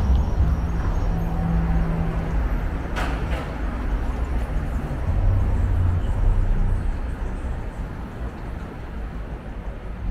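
City street traffic noise: a steady low rumble with vehicle engines running and passing, and one sharp click about three seconds in.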